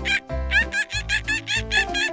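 Baby giggling in a quick run of high-pitched laughs over light children's background music.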